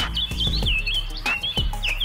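Small birds chirping: a rapid, continuous run of short, high, curling chirps, with low thuds underneath.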